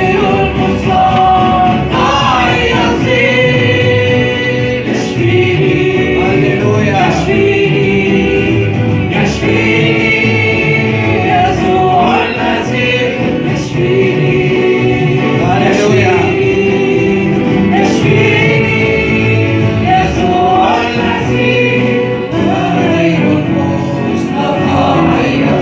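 Christian worship song sung by a woman on a microphone, with the congregation singing along over musical accompaniment, loud and steady throughout.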